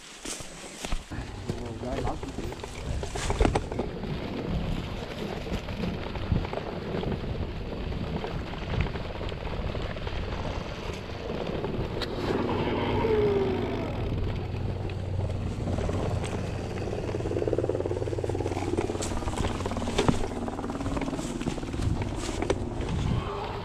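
Mountain bike descending a grassy, rocky trail: tyres rolling over rough ground, the bike rattling, with sharp knocks as it hits rocks and bumps, near three seconds in and again near the end.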